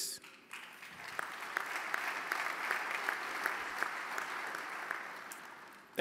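Audience applauding. The clapping builds up about a second in, holds steady, and dies away near the end.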